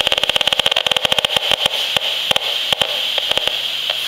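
Audio output of an HF35C RF analyser crackling with the radio pulses from a bank of wireless smart meters. A rapid run of clicks thins out to scattered clicks after about a second and a half, over a steady hiss.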